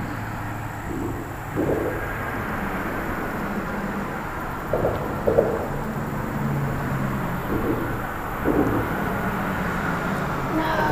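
Steady low rumble of road traffic on the bridge overhead, with a faint engine hum. About half a dozen brief rustles of feet pushing through tall weeds.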